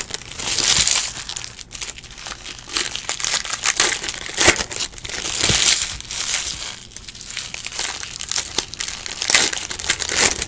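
Foil trading-card pack wrappers crinkling and crumpling in repeated bursts as packs are ripped open and handled.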